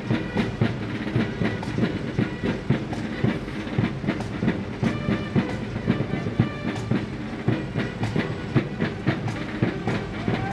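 Parade marching band's drums beating a steady marching rhythm, a few strokes a second, with held tones over the low running of a fire engine's diesel engine.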